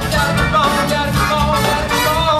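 Live band music: a male lead vocal sung over a drum kit, electric bass and keyboards.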